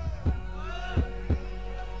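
Suspense music cue with low heartbeat-like thuds, about three a second, under a held synthesizer drone and faint rising tones, building tension before a result is announced.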